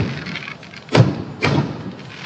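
Aerial fireworks shells bursting: a bang right at the start, another about a second in and a third half a second after that, each trailing off.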